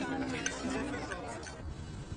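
Faint, indistinct background voices, with a soft musical score holding a few notes and fading out in the first second.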